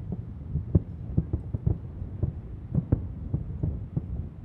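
Distant fireworks shells bursting: an irregular run of dull thuds, about three a second, the sharpest a little under a second in and just before three seconds, over a steady low rumble.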